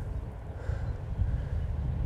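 Wind buffeting the microphone outdoors: a low, fluctuating rumble with no other distinct sound.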